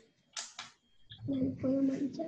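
A voice speaking Spanish, preceded by a short hiss about half a second in.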